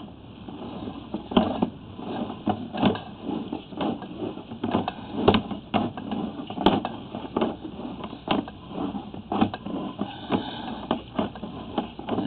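Sewer inspection camera's push cable being pulled back out of the drain line: a run of irregular clicks and knocks, a few each second.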